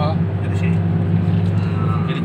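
Honda Jazz's four-cylinder engine heard from inside the cabin, running at a steady cruise with a constant low drone. The engine has just had the carbon deposits cleaned from its combustion chambers.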